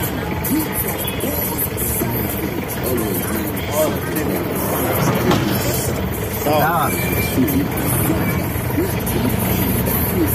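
Busy street traffic heard from inside a slow-moving vehicle's cab: engine rumble, with voices and music mixed in.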